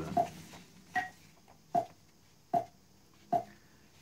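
A metronome clicking steadily at about 76 beats per minute, five short pitched clicks roughly 0.8 s apart.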